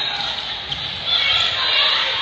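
Gym ambience during a volleyball rally: voices of players and spectators, with ball hits.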